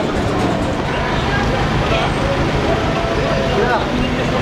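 Outdoor street ambience: indistinct voices of passers-by over a steady low rumble.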